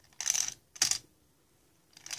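Plastic Elmo baby toy with rings rattling and clattering as a rabbit noses and mouths it, in short bursts: two within the first second and another starting near the end.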